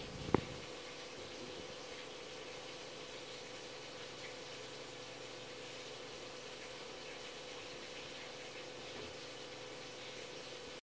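Faint steady room noise with a thin, low hum running underneath, broken by a single sharp click about a third of a second in.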